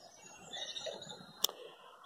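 Faint distant birdsong in short chirps, with a single sharp click about a second and a half in.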